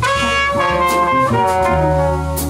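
Trumpet and trombone playing long held notes together in harmony over double bass in a live jazz quartet. The horns move to new notes a little past halfway.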